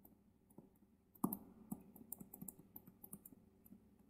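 Stylus tapping and scratching on a tablet screen while handwriting: a run of faint, irregular clicks with one louder knock about a second in.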